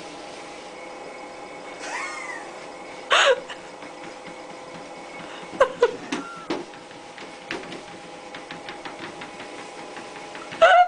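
Kittens meowing four times, the call a little after 3 s the loudest, over the steady hum of a running treadmill; light rapid ticking follows in the last few seconds.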